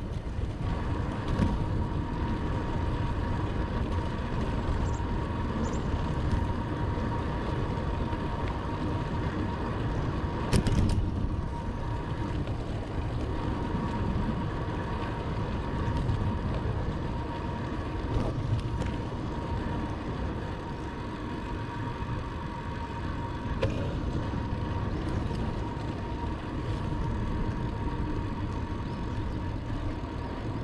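Wind buffeting a helmet-mounted camera's microphone with tyre and road noise from a bicycle riding at about 27 km/h: a steady low rumble with a faint steady whine. A sharp knock about eleven seconds in.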